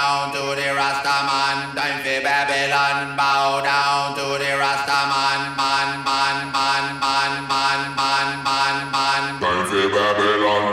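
Electronic dance music from a live house/techno DJ set: a steady kick beat about two a second under a held bass drone, with a chanted vocal melody moving in steps above it. Near the end the bass drops to a lower note.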